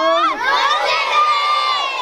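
A large group of children shouting together in unison, rising into one long held cheer that stops just after two seconds.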